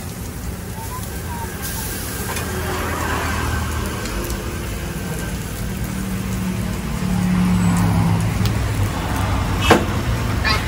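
Steady low rumble of a gas burner running under a large iron tawa, mixed with the hum of a nearby vehicle engine that grows louder from about six to eight seconds in.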